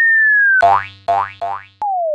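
Cartoon sound effects: a whistle tone sagging slightly in pitch, then three quick springy boings, then a click and a long whistle tone sliding steeply down.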